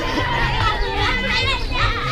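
Many children's high voices chattering and calling out at once, several overlapping.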